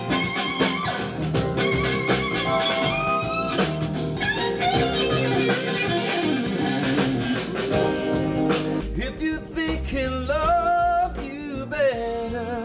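Blues-rock band music led by electric guitar, with held and bending notes, and singing near the end.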